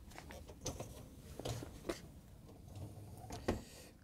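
Dishwasher wire upper rack being pushed back into its rails, its wheels rolling along the tracks with a few faint clicks and knocks, the sharpest about three and a half seconds in.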